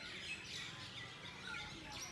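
Faint outdoor ambience with several short bird chirps scattered through it.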